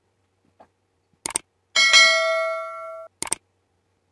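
Sound effect of an animated notification-bell graphic: a short double click, then a bright bell ding with several ringing tones that fades for over a second and cuts off abruptly, followed by another double click.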